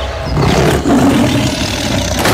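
Tiger roaring: a deep, drawn-out roar that swells from about half a second in.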